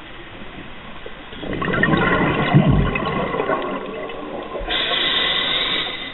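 Scuba diver's exhaled bubbles rushing and gurgling up past the camera housing, starting about a second and a half in, followed near the end by a steadier hiss, typical of breathing in through the regulator.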